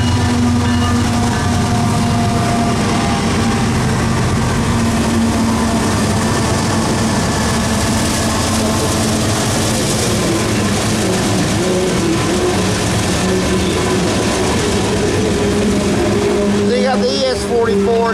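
CSX GE diesel locomotives (an ES44 and an AC44) working hard upgrade as they pass close by, their engines droning loudly, then easing as the steady rumble and clatter of covered hopper cars rolling past takes over.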